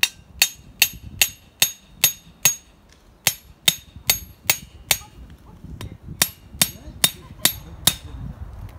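Metal rod of a portable camp grill stand being driven into the ground, struck repeatedly on its top with the back of a hatchet: about eighteen sharp, ringing metal-on-metal blows, roughly two and a half a second, in three runs with short pauses between.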